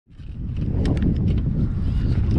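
Spinning reel being wound in against a bent rod on a hooked fish, giving scattered light clicks over a heavy low rumble of wind on the microphone.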